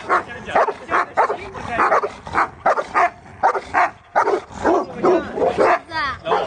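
Husky barking half-heartedly in a quick run of short barks, about three a second.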